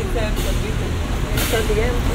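Low steady rumble of a ride boat moving along its water channel, under quiet, indistinct conversation from nearby riders, with a short hiss about one and a half seconds in.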